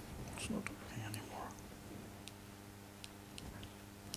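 Faint, indistinct speech with a few small clicks over a steady low hum.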